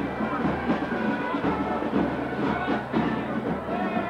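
Marching band playing, its drums beating steadily, over the noise of a packed crowd.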